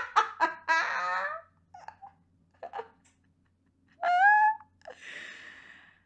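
Two women laughing and squealing: a high falling laugh at the start, a short high rising squeal about four seconds in, then a breathy sound.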